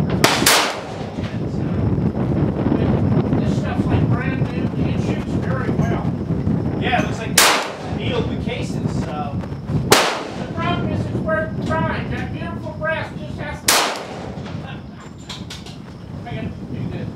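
AR-15 rifle firing .223 rounds: a shot near the start, then single shots about 7½, 10 and 14 seconds in, each a sharp crack. Wind rumbles on the microphone between the shots.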